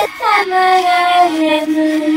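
A high, child-like singing voice played backwards, holding long notes. A steep falling glide comes just after the start, and the pitch steps down to a lower held note about halfway through.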